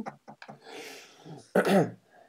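A man near the microphone takes a soft breath, then makes a short throat-clearing sound near the end.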